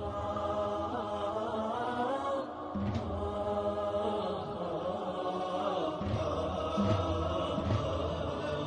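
Melodic religious chanting: a voice sings long held notes that waver and glide in pitch.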